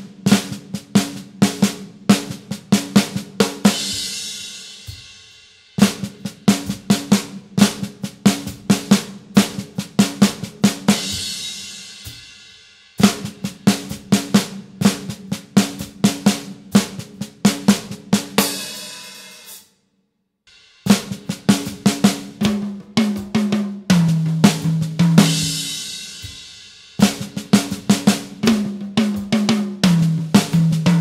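Drum kit playing a fast fill over and over: three times on the snare drum alone, each run ending in a cymbal crash. After a short pause it comes twice around the toms, stepping down in pitch from the high toms to the low toms and ending in a crash.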